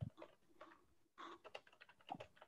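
Faint typing on a computer keyboard: an irregular run of quick key clicks with a brief pause partway through, heard over a video-call line.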